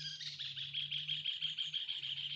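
Small birds singing: a high held note gives way, a moment in, to a fast, high trill that keeps going.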